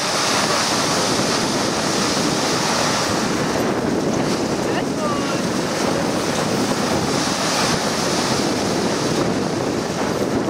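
Dog sled moving over glacier snow: a steady rushing hiss of the runners and the dogs' feet on the snow, mixed with wind on the microphone. The pulling dogs are silent.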